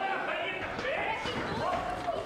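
Indistinct voices with a few dull thuds of wrestlers' feet moving on the ring canvas.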